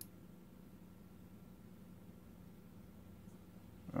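A single computer mouse click at the very start, then a faint steady low hum.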